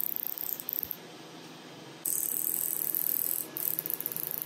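Halo hybrid fractional laser handpiece firing as it is passed over the face: a fast, high-pitched rattling tick. It pauses briefly about a second in, then resumes louder about two seconds in.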